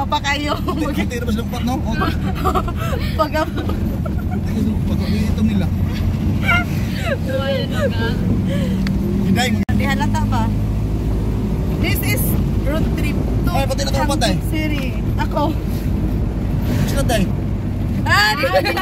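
Steady low engine and road rumble heard inside a moving vehicle, with scattered voices over it. A momentary dropout about ten seconds in marks an edit, after which the rumble continues.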